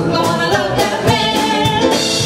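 Live band music: a male lead vocal sung over a small band with drums, in an upbeat pop-soul song.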